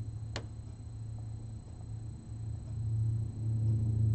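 A soft, low sustained keyboard note, held steadily and swelling louder in the second half, with a single sharp click just after the start.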